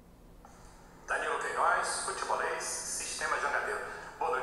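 Almost a second of quiet room tone, then from about a second in a person's voice talking over a remote call link, thin and narrow like a telephone line.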